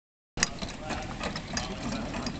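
A pony trotting close by while pulling a four-wheeled carriage: a quick run of hoofbeats mixed with the rattle of the carriage wheels and harness. The sound begins abruptly just under half a second in.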